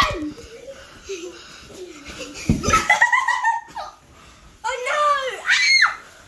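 Children's wordless laughing and excited squealing voices, with a dull thump about two and a half seconds in.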